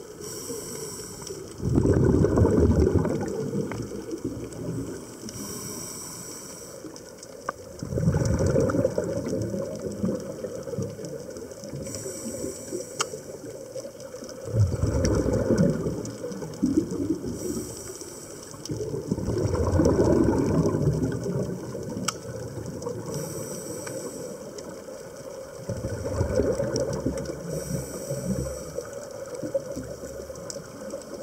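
Scuba diver breathing underwater through a regulator: a short hiss on each inhale, then a louder rumble of exhaust bubbles on each exhale, repeating about every six seconds.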